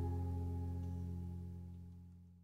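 The last strummed acoustic guitar chord of the song rings out and slowly fades away.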